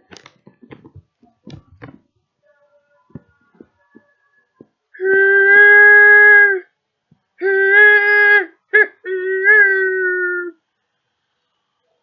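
Model steam locomotive's electronic whistle blowing the long, long, short, long grade-crossing signal, each blast a steady chime-like tone that starts and stops sharply. A few faint clicks come before it.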